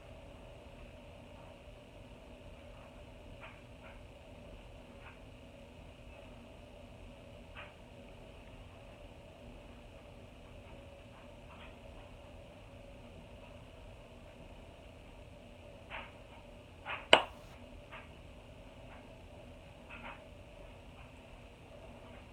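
Quiet room tone with a low steady hum, broken by a few faint clicks and one sharper click about seventeen seconds in.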